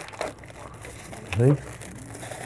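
Paper-and-plastic sterile packet of a 50 ml catheter-tip syringe crinkling softly as it is peeled open by hand. A brief man's voice cuts in a little over a second in.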